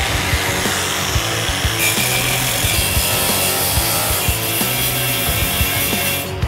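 Angle grinder with an abrasive cut-off disc running and cutting into a stove's sheet-steel body, grinding through the rivets that hold its panels. The grinding starts at once and runs steadily.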